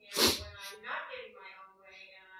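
A woman's voice speaking away from the microphone, faint and roomy, opened by a short, loud, breathy burst just after the start.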